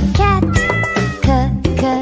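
Upbeat children's song backing music with a cat meowing over it as the letter C for cat comes up.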